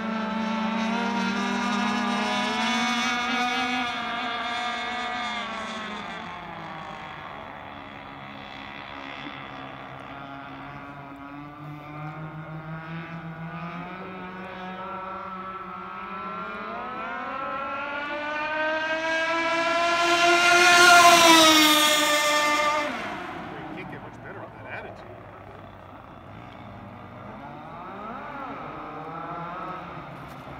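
Radio-controlled speedboat's motor running at high speed on successive passes, its pitch rising and falling as it runs. It is loudest as the boat passes close about twenty seconds in, the pitch climbing on the approach and dropping away after.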